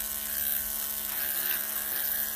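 Electric dog-grooming clippers with a very short 40 blade running with a steady buzzing hum as they cut through a thick felted mat of hair.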